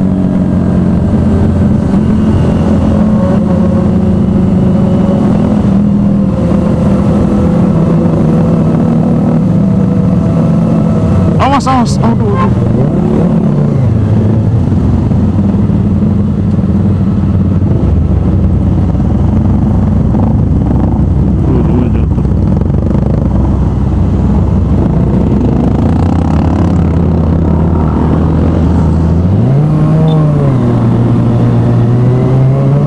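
Sport motorcycle engine running in slow traffic. Its pitch steps down as the bike slows, with a short sharp rev and fall about twelve seconds in and another rising rev near the end.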